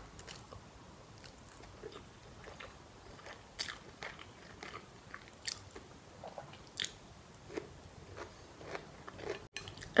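Close-miked eating sounds of a person chewing noodles: soft wet chewing with short, sharp mouth clicks and smacks every second or so, a few louder ones after the first few seconds.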